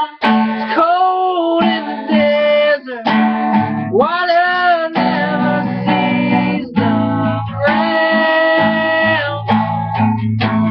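A man singing, with an acoustic guitar playing along, holding long notes.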